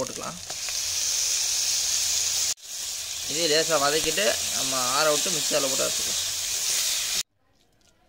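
Sliced onions and freshly added chopped tomatoes sizzling in hot oil in a kadai. The steady hiss dips briefly partway through and cuts off suddenly near the end.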